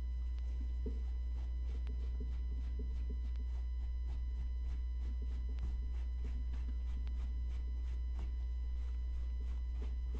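A white cloth towel rubbed quickly back and forth over the canvas of a handbag, working in a spot-test of suede cleaner, in a run of faint, even strokes about three a second. A steady low hum runs underneath and is the loudest sound.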